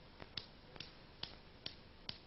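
Two hanging pendulum balls of different masses knocking together as they swing, a faint light click repeating at an even pace of a little more than two a second.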